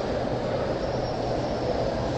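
Steady background noise: an even hiss with a faint low hum under it and no other events.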